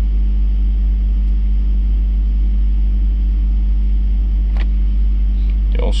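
Steady low engine rumble with a constant hum, unchanging throughout, and a single short click a little after four and a half seconds in.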